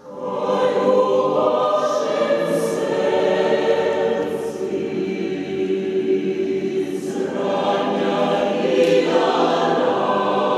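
Mixed choir singing a cappella, coming in together after a pause and holding full sustained chords, with sung consonants hissing now and then. Church reverberation carries the sound.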